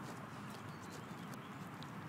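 Alaskan malamute chewing on a rabbit carcass: a few faint, scattered wet clicks of teeth and jaw over a steady background hiss.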